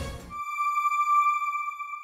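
Background music cuts off about a third of a second in, and a single high electronic chime rings out in its place, a steady tone that slowly fades: the broadcaster's closing logo sting.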